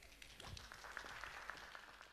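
Faint applause: many scattered claps, dying away near the end.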